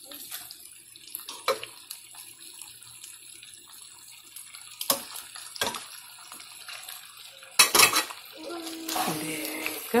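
Wooden spoon stirring sauce-coated ziti in a pan: wet squelching and scraping of the pasta, with a few sharp knocks of the spoon against the pan, the loudest cluster a couple of seconds before the end.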